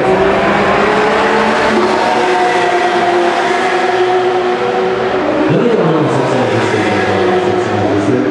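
Porsche 911 GT3 Cup race car's flat-six engine running hard through a corner. The engine note wavers, and past halfway a pitch sweeps sharply up and then back down.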